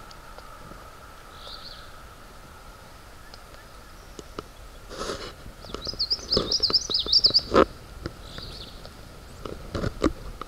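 Warbler singing a short, high, rapid song of about a second and a half, with fainter high notes before and after it. A run of sharp clicks and knocks comes around the song, the loudest just after it.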